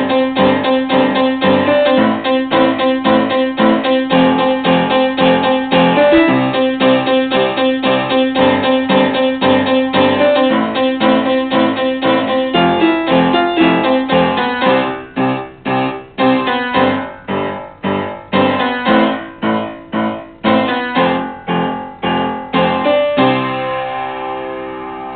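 Piano played with both hands: a fast, even run of repeated chords, then from a little past halfway shorter separated chords with the sound dying away between them, ending on a chord left to ring.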